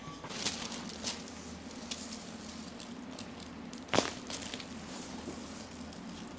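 One loud, sharp crack about four seconds in, a neck joint popping (cavitating) during a chiropractic neck adjustment. It is preceded by a few fainter clicks over a steady low hum.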